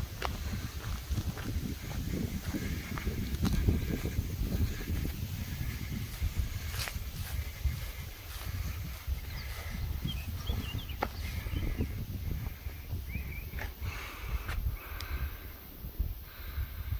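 Wind buffeting the microphone with a gusty low rumble, and a few short bird chirps about two-thirds of the way through.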